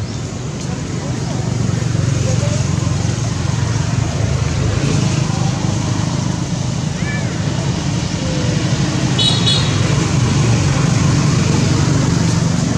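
Steady low rumbling background noise, with a few faint, brief high chirps.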